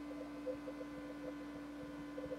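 Quiet room tone: a faint steady hum, with a couple of faint ticks near the start.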